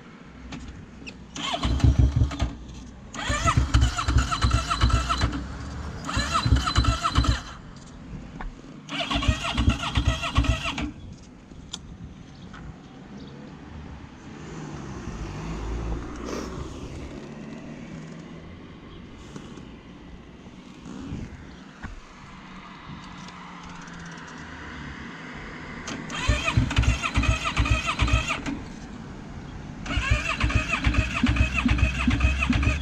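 A sport quad's electric starter cranking the engine in five short attempts, four in quick succession and a fifth after a long pause, without the engine catching. The engine will not start, a fault the rider is trying to trace: out of fuel, a flat battery or a dead fuel pump.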